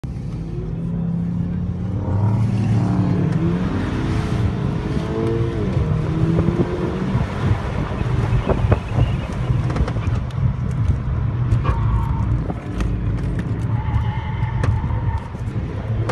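Car engine heard from inside the cabin, driven hard through an autocross cone course, its pitch rising and falling as it accelerates and slows between turns. Tires squeal in the corners, most plainly near the end.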